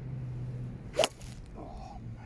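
Golf iron swung and striking a ball off a hitting mat: a short whoosh into one sharp crack of impact about a second in.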